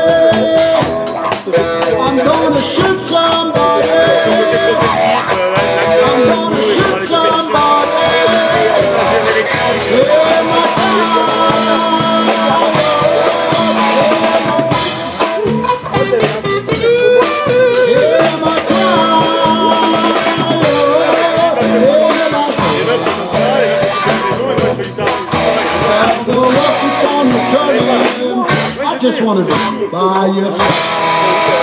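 Live blues trio playing an instrumental passage: an electric guitar, a Paul Reed Smith McCarty through a Fulltone wah pedal into a Koch Studiotone amplifier, plays lead lines with bent notes over upright double bass and drum kit.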